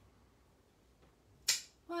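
A single sharp click about one and a half seconds in: a rotary leather hole punch snapping shut through two layers of buckskin.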